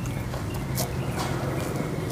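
Wet mouth clicks and lip smacks of people chewing spicy chicken feet: a few short, sharp clicks scattered over a low steady hum.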